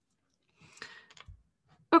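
Near silence, then a few faint clicks with a short soft rush of noise about a second in. A woman's voice starts right at the end.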